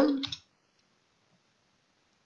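A voice finishing a word, then near silence.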